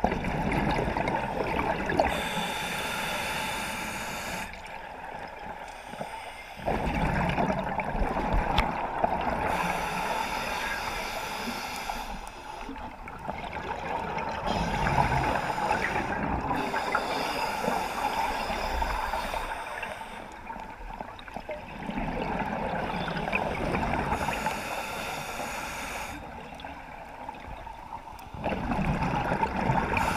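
A scuba diver breathing through a regulator underwater: bubbling, gurgling exhalations of four to six seconds each, about five of them, with quieter gaps of about two seconds between them.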